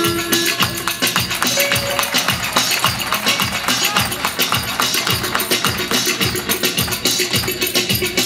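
Instrumental Turkish folk dance music with a steady, fast beat: regular low drum beats under dense rapid clicking percussion.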